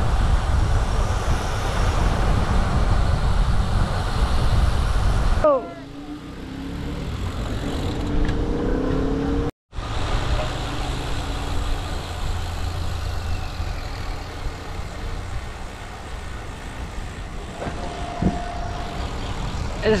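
Wind buffeting the microphone of an action camera on a moving road bike, with tyre noise on the tarmac, as the rider rolls along in a group of cyclists. The rush drops suddenly about five and a half seconds in, cuts out for a moment near ten seconds, then returns steadily.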